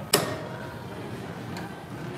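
A single sharp clack from a Matrix weight machine's seat and frame as a man sits down on it, ringing briefly, with a faint tick about a second and a half in.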